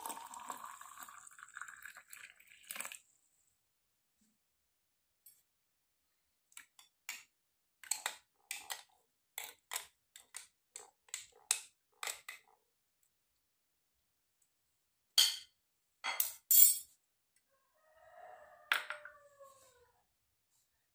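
Hot water pouring into a glass jar of sliced limes tails off over the first few seconds, rising slightly in pitch as the jar fills. A metal spoon then clinks repeatedly against the glass as the drink is stirred, with a few louder knocks of the spoon on the glass later on. Near the end there is a brief squeak.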